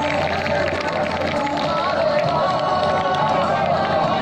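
A song with long held notes, over the steady background noise of an outdoor gathering.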